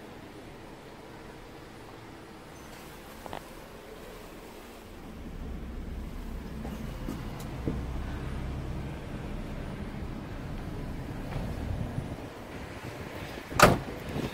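Faint low rumbling in the middle, then a Chevrolet Corvair's door shut with a single loud thud near the end.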